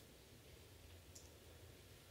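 Near silence: faint room tone, with one tiny click about a second in.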